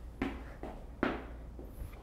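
Two soft footsteps of sneakers on a wooden floor, about 0.2 s and 1 s in, each a short scuff that fades quickly.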